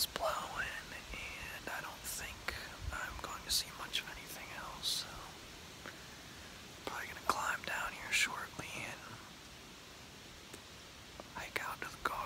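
A man whispering, speaking in short phrases with a pause near the end.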